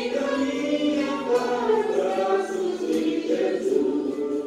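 A choir singing a hymn, several voices holding and moving between sustained notes.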